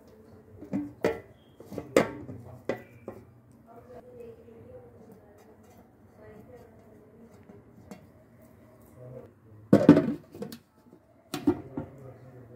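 Metal cooking pot and lid being handled: a few sharp knocks and clinks of metal in the first three seconds, then a louder clatter with some ringing about ten seconds in, and another shortly after.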